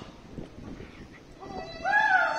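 A lull with faint hall sound, then about one and a half seconds in a voice starts a long, loud call that rises and falls in pitch.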